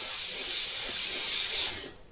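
Airbrush spraying acrylic paint, a steady hiss of air as the trigger is worked for fine lines, cutting off near the end when the trigger is released.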